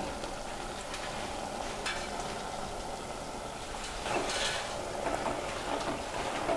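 Pork pieces in masala sizzling steadily in a metal pressure-cooker pot, with a spatula scraping and stirring through them about four seconds in.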